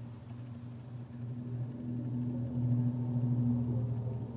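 A low, steady hum with two held tones, which grows slightly louder after about a second.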